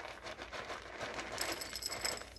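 Dry cat treats rattling in a plastic treat tub as they are shaken out, small pieces clicking as they drop into a bowl.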